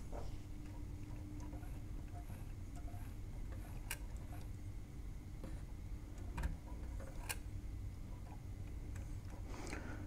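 Faint, sparse plastic clicks and ticks from a CD player's laser pickup mechanism and its gears being moved by hand, a few sharp ones a second or more apart, over a low steady hum.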